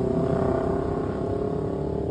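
A group of motorcycles riding past on the road, their engines making a steady drone whose pitch eases slightly lower.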